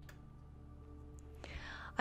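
Background music cuts off, leaving a faint hiss with a fading held tone; in the last half second, a breathy in-breath just before the narrator's voice comes in.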